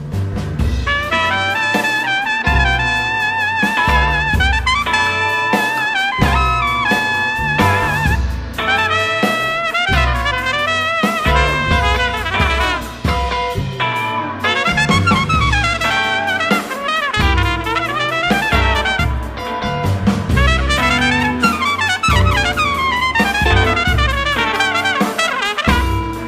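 Piccolo trumpet soloing in quick runs of notes, some held with a wavering vibrato, over a jazz big band with saxophones, double bass and drum kit.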